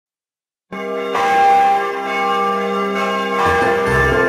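A large church bell ringing: it is struck just under a second in and again a moment later, and its many tones hang on. A low, pulsing music beat comes in near the end.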